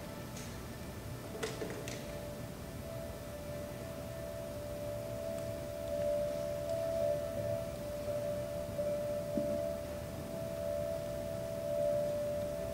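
A single sustained musical tone, held steady and swelling slightly about halfway through, over faint hall noise, with a couple of light knocks about a second and a half in.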